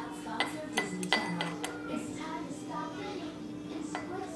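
A metal tablespoon clinking against glass about four times in the first two seconds, the loudest one near a second in with a short bright ring, as oil is measured into the spoon from a glass bottle.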